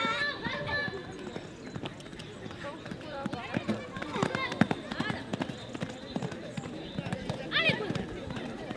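A pony's hoofbeats at a canter on an arena's sand, a run of short thuds loudest in the middle, mixed with people's voices, one raised at the start and again near the end.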